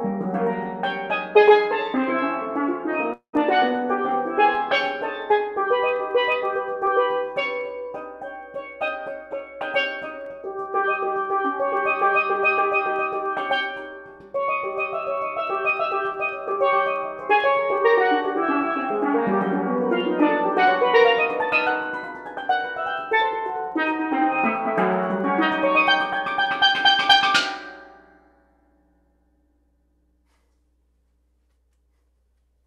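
Solo steel pan music: quick runs of struck, ringing notes on two pans, building to a final flurry that stops about two seconds before the end. The sound drops out for an instant about three seconds in.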